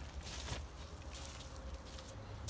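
Quiet background: a steady low rumble with a few soft rustles and scuffs.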